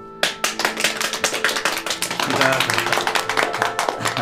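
A small group clapping their hands, starting a moment in and going on steadily, over soft background music.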